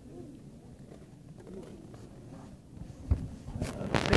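Faint, indistinct voices echoing in a sports hall. About three seconds in there is a sharp low knock, and near the end several sharp bumps and rubs of fingers against the phone's microphone.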